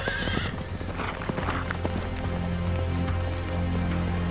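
A horse whinnies at the start, then a rapid clatter of hoofbeats as horses are ridden past at speed. Under it a low, droning music score swells in and holds.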